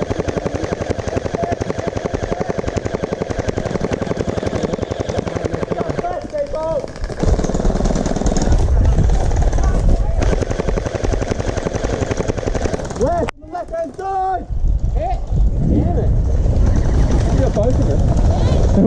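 Electric gel blaster firing on full auto: a rapid, even rattle of shots in long strings, broken briefly about six and thirteen seconds in. Short shouts fall in the breaks.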